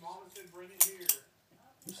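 Metal balisong (butterfly knife) handles clacking together twice, about a third of a second apart, as the knife is flipped in an upward swing.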